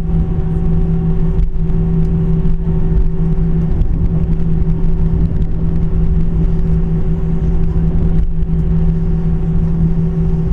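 Airliner cabin noise while taxiing: the jet engines' steady hum at taxi power over a low rumble.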